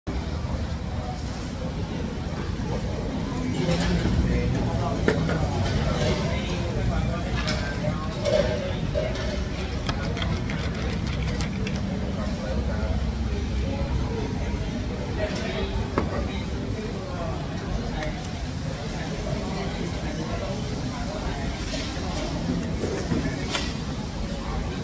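Indistinct voices over a steady low rumble, with a few faint clicks.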